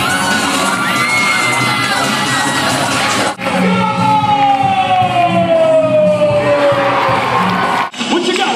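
Crowd of students cheering and whooping in a school gymnasium over loud music. The sound breaks off briefly a little over three seconds in, then resumes with a long falling tone over a pulsing beat.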